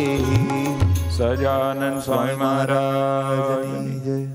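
Indian devotional music: tabla and electronic keyboards with voices singing. The drum strokes stop about a second and a half in, leaving held keyboard notes and singing.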